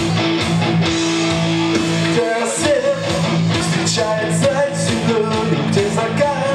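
Live rock band playing: electric guitar chords over a steady drum beat, with a higher melodic line coming in about two seconds in.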